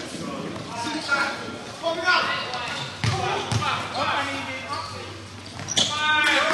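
A basketball bouncing on a hard court during play, a few dull thumps, among players' and spectators' indistinct shouts, with a sharp smack near the end.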